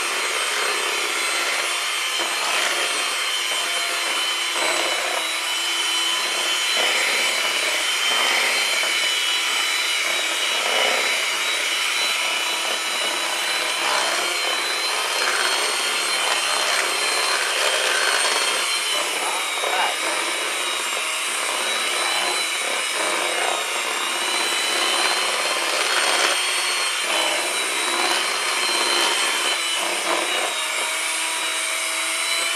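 Electric hand mixer running steadily, its beaters churning cake batter in a plastic bowl. The motor gives a steady high whine that wavers slightly in pitch.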